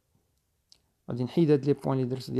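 About a second of near silence broken by a faint click, then a man's voice starts speaking.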